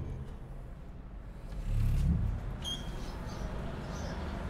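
City street traffic: a steady low rumble, with a vehicle engine swelling louder about two seconds in, and a short high chirp just after.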